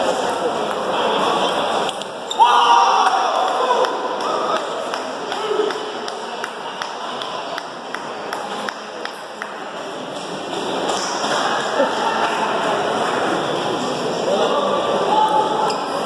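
Table tennis ball clicking off paddles and table in doubles rallies, with voices in the hall and a loud call about two and a half seconds in.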